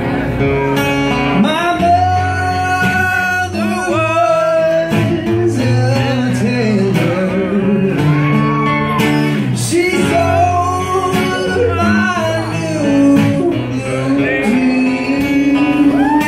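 A man singing into a microphone, accompanied by an acoustic guitar. The melody has several long held notes.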